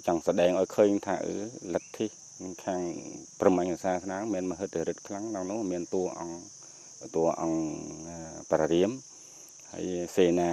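A man speaking in Khmer, in phrases with short pauses, over a steady high-pitched insect drone that never breaks.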